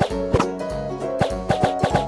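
Background music with a regular drum beat over held notes and a bass line.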